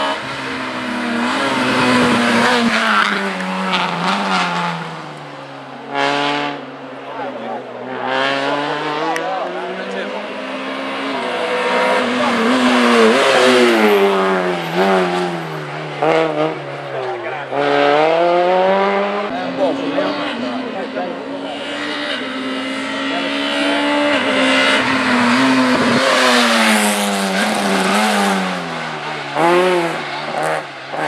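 Small hatchback race cars running an autoslalom, their engines revving up and dropping back over and over as they brake and accelerate between the cones. Tyres squeal at times.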